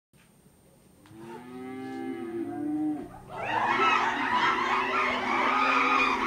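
Cattle mooing: one moo starting about a second in, then a louder, longer one from about three seconds in.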